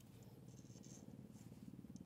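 Near silence: a faint, steady low hum.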